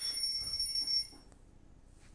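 A phone ringing with a thin, high, steady electronic tone that cuts off abruptly a little over a second in.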